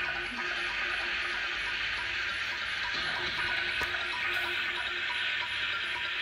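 A Sony SLV-XR9 VHS video cassette player running in play: a steady hiss with a faint, regular tick about three times a second.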